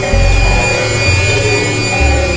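Dense experimental electronic music: many layered sustained synth tones over low bass notes that change a couple of times, with a noisy wash in the upper range.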